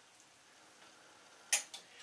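Near silence, then about one and a half seconds in two sharp clicks close together: clothes hangers knocking against a metal clothes rail.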